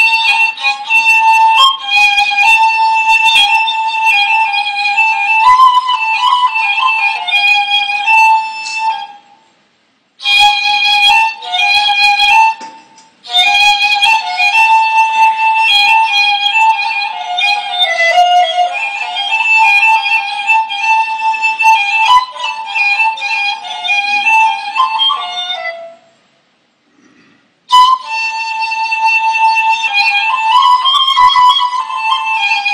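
Persian ney (end-blown reed flute) playing a melody in the Chahargah mode, in long phrases with short breath pauses about nine, thirteen and twenty-six seconds in.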